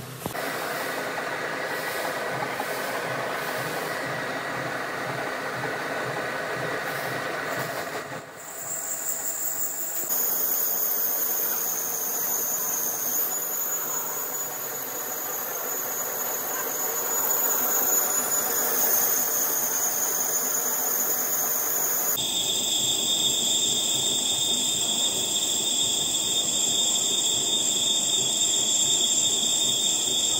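Metal lathe turning a steel hydraulic cylinder rod: steady machining noise with a hiss and a high, steady whine. The whine comes in about ten seconds in and changes pitch abruptly about twenty-two seconds in.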